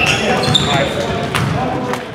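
Basketball game sound on a gym court: a ball bouncing on the hardwood floor amid players' voices, tapering off at the end.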